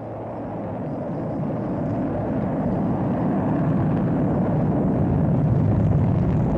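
Deep rumbling noise, like a rocket or jet engine, swelling steadily louder: a sound effect inside a space-themed instrumental track.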